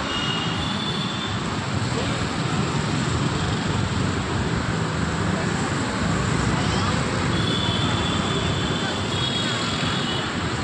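Steady urban street traffic noise, mostly scooters and motorbikes with auto-rickshaws, under a mix of voices. A faint high-pitched tone sounds briefly near the start, then again from about seven seconds in.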